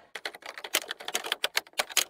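Typing sound effect: a quick, irregular run of keystroke clicks that cuts off suddenly at the end.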